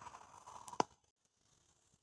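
Faint noise from a video call's audio, ending in a single sharp click just under a second in, after which the sound drops to near silence as the call is ended.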